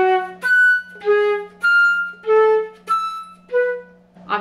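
Concert flute playing a detached passage of wide leaps, about seven notes swinging between low and high registers, the low notes climbing and the high notes stepping down.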